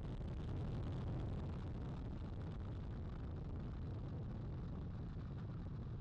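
Space Launch System rocket lifting off: a steady low rumble from its four RS-25 core-stage engines and two solid rocket boosters.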